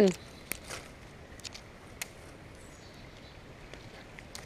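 Leafy branches pushed aside by hand: a few faint scattered clicks and snaps over a faint steady hiss.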